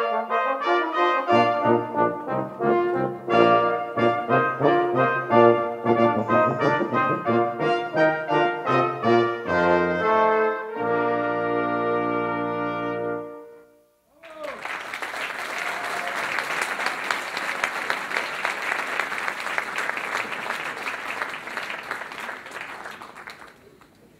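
Brass quintet of trumpets, French horn, trombone and tuba playing a lively passage, then holding a final chord that cuts off about 14 seconds in. Audience applause follows and dies away near the end.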